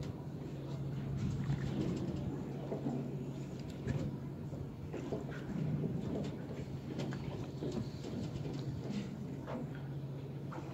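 Boat engine humming steadily, with water sloshing and splashing and scattered light clicks over it.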